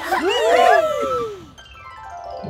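A burst of cartoon whoops over music: several high voices or sound effects slide up and down in pitch at once, fading out after about a second and a half.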